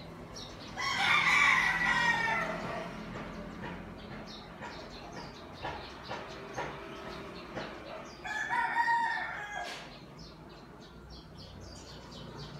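A rooster crowing twice, each crow about two seconds long and dropping in pitch at its end.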